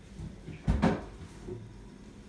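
Short clunk of a door or cupboard being handled: two quick knocks close together a little under a second in.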